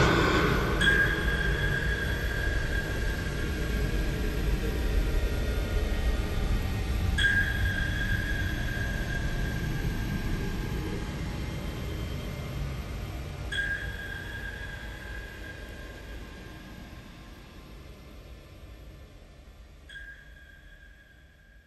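Sonar-style pings, a single high tone struck four times about six seconds apart and ringing away each time, over a low rumble, all fading out as the song ends.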